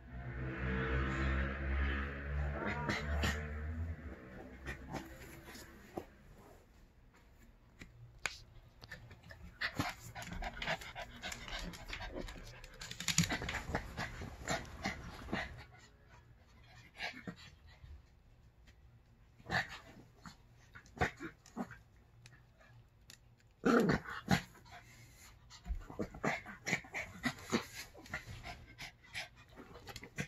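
Two small dogs play-wrestling in a fabric pet bed: a low play-growl at the start, then panting and scuffling with short knocks against the bed.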